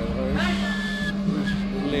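A man whistling a thin, high, steady note for about half a second, then a brief second short whistle, like a kettle, over background music with a steady low hum.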